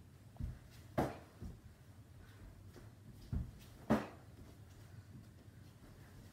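Two sharp smacks of kicks landing on a hand-held striking pad, about three seconds apart, each with softer thuds of bare feet stepping on a wooden floor around it.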